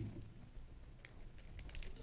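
Faint, scattered clicks of a laptop keyboard being tapped, mostly in the second half, in a quiet room.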